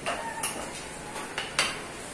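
Plastic rolling pin knocking against a stainless steel worktop as it is picked up and handled: three sharp knocks with a brief metallic ring, the last about a second and a half in the loudest.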